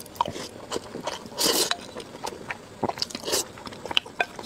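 Close-miked chewing of a mouthful of rice and stir-fried chili peppers, with wet mouth clicks and smacks throughout and two louder, squelchier bites about one and a half seconds and three seconds in.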